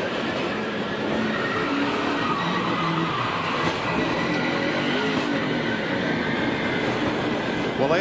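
Stock-car crash at racing speed: race car engines running amid a steady, dense noise of cars skidding, with one overturned car sliding along the track on its roof.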